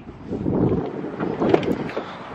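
Wind buffeting a handheld camera's microphone as it is carried, an uneven low rumbling noise, with a couple of light knocks about one and a half seconds in.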